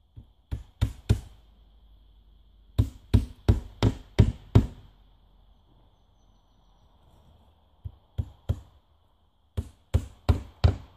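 Hammer driving nails into cedar siding boards: sharp blows in groups of about three a second, four at the start, a run of six a few seconds in, and three more near the end.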